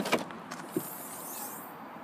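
Land Rover Freelander 2 tailgate being opened: a sharp latch click right at the start, a lighter click under a second in, then the tailgate lifts quietly.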